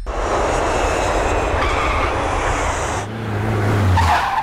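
A loud rushing noise like a speeding car for about three seconds. Near the end it gives way to a low engine drone that swells louder.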